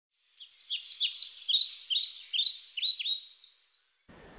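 Birds chirping: a quick run of high chirps and short downward-sweeping notes that fades out near the end.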